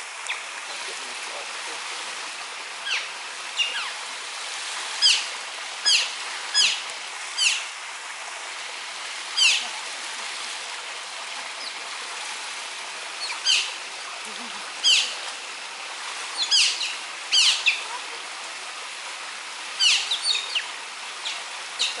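A run of short, high chirps, each sliding quickly down in pitch, coming singly or in quick clusters of two or three every second or two over a steady background hiss.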